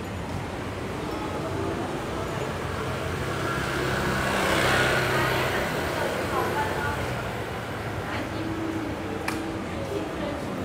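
A motorbike passing close by, its engine and tyre noise growing to loudest about halfway through and then fading as it rides off down the street.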